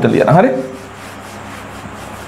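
Board eraser rubbing marker writing off a whiteboard in repeated wiping strokes, starting just after a brief spoken word.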